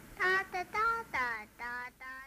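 A high-pitched voice singing a quick run of about five short "da" notes, one of them sliding down in pitch, ending in a laugh.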